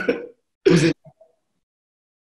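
A man's short laugh heard through a video call, two brief bursts, then the sound cuts off abruptly about a second in.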